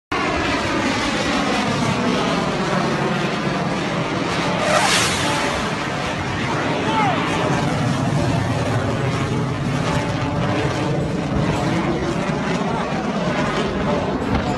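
Fighter jet flying low overhead, its engine noise loud and continuous with a swishing sweep in pitch that falls and then rises again as it passes, and a brief louder surge about five seconds in.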